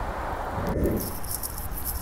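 Wind buffeting the microphone: a steady low rumble with a rushing hiss, which changes abruptly about three-quarters of a second in and turns brighter and patchier.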